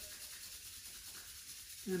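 Two hands rubbing together, palm against palm, with a steady swishing friction sound.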